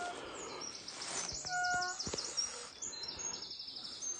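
Woodland birds singing: a quick series of high chirps repeating steadily, with a brief lower whistled note about a second and a half in.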